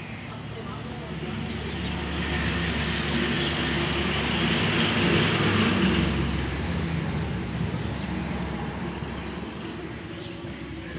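A motor vehicle's engine and road noise swelling to a peak about halfway through and then fading, as it passes by.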